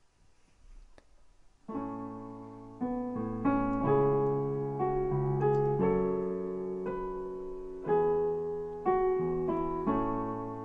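Piano playing a song's intro. It starts after about two seconds of near silence, with chords struck roughly once a second and each left to ring and fade.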